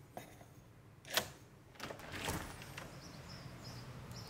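A front door being unlocked and opened: one sharp click of the lock about a second in, then quieter handle and door sounds as it swings open.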